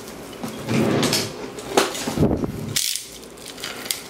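A small bubble-wrap plastic bag crinkling and rustling in the hands as it is opened, with a few knocks.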